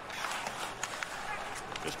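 Ice hockey arena sound: steady crowd noise with a few faint sharp clacks from the play on the ice.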